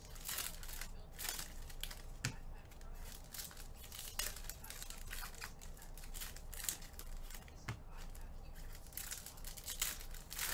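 Wrappers of 2020-21 Panini Contenders Basketball packs being torn open and crinkled by hand: an irregular run of short tearing and rustling sounds.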